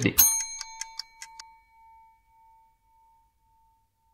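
A clock ticking about four times a second, with a bright bell chime just after the start whose ring fades away over the following few seconds; the ticking stops about a second and a half in.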